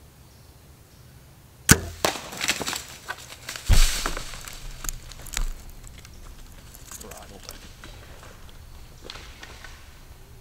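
A bow shot: a sharp crack of the string about two seconds in, followed by several seconds of crashing and rustling through dry leaves and brush.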